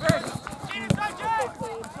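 Several voices shouting and calling out at once across a grass soccer pitch, with two sharp thuds, one right at the start and one just before a second in.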